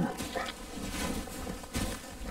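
Polar bear mother and cubs making low animal sounds, snuffling and shifting against each other in the snow, with a brief louder scuffle near the end.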